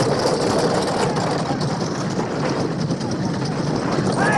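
A dense, steady din of film battle sound, a rumbling noise with crowd voices mixed in and no single sound standing out.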